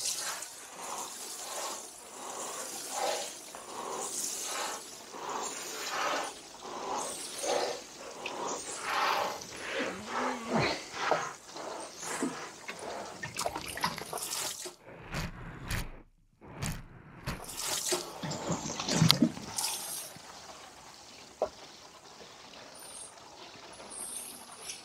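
Water pouring from a plastic watering can onto compost in seedling trays and root-trainer pots, watering in freshly sown runner beans. It splashes and trickles in uneven spurts and grows quieter in the last few seconds.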